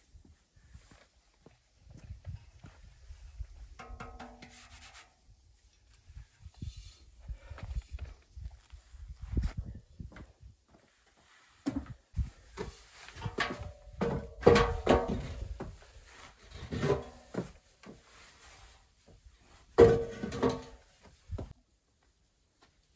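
Scattered wooden knocks, thuds and rubbing from timber and boards being handled inside a small plank hut. The loudest knocks come about halfway through and again near the end.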